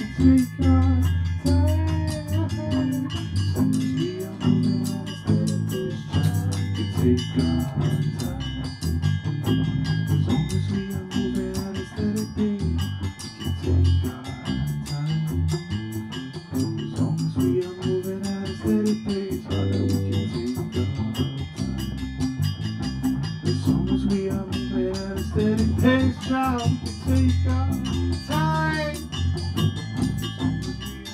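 Small band playing live, an instrumental stretch led by guitar over a bass line.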